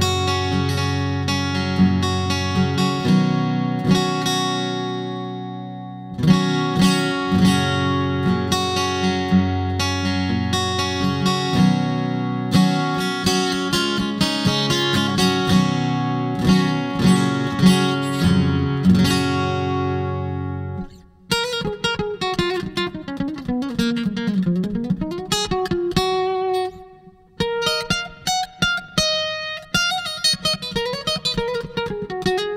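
Takamine acoustic-electric guitar played through a Valeton GP-100 multi-effects unit on its D-Type acoustic simulator: strummed chords for about twenty seconds, then single-note picked lines with a slide down and back up, a short break, and more picked notes.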